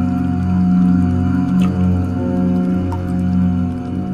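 A deep male voice chanting 'Om' in long, held drones that swell and fade, with a steady ringing tone behind.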